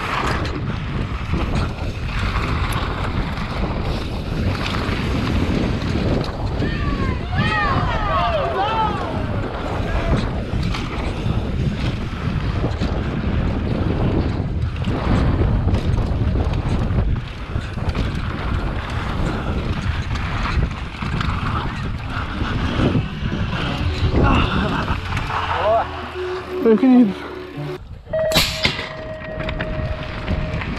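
Wind rushing over a helmet-mounted GoPro microphone, mixed with knobby mountain-bike tyres on a dirt track, as the bike descends a dual slalom course at speed. Shouts from spectators come in a few seconds in. Near the end there is a short loud burst, then a steady tone.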